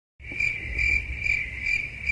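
A cricket chirping in an even, pulsing rhythm of about two to three chirps a second, over a low rumble.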